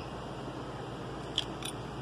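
Two short, sharp clicks about a quarter of a second apart in the second half, over a steady background hiss.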